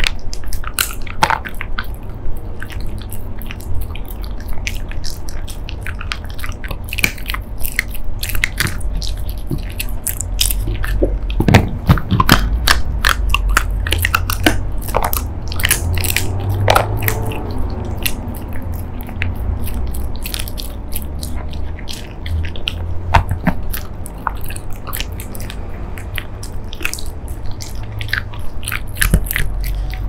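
A Shiba Inu chewing dried chicken jerky, with many irregular crunches and bites.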